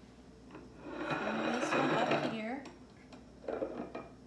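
The glass base of a tall Christmas-bulb topiary scraping as it is slid across a granite countertop, a rough grinding sound lasting about a second and a half and starting about a second in.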